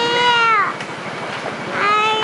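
A high-pitched, drawn-out vocal call that rises slightly and then falls away, ending about two-thirds of a second in; a second call like it starts near the end.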